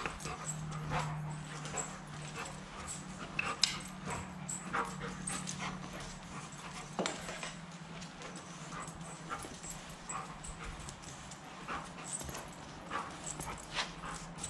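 Black Labrador retriever playing on a concrete floor: scattered light taps and clicks of claws and a hockey stick on the concrete, with short whimpers from the dog. A steady low hum runs underneath.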